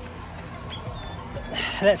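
A few faint, short, high-pitched animal calls about halfway through, over a low steady rumble.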